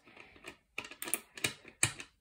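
Small magnetic balls clicking against each other in a quick run of small sharp clicks as a card slices a row off a sheet of balls and the pieces snap apart and back together; the loudest click comes near the end.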